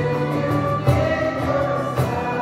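Young voices singing a Christian worship song together over strummed acoustic guitar, with a strong strum about a second in.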